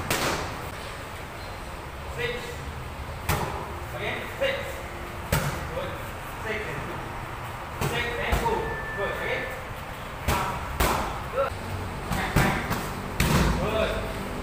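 Boxing gloves striking a trainer's focus mitts and pads: about eight sharp slaps at irregular intervals, some in quick pairs.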